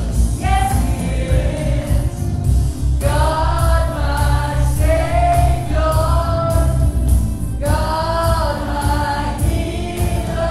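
A woman singing a gospel song into a hand microphone over instrumental accompaniment with a heavy, steady bass, holding long notes.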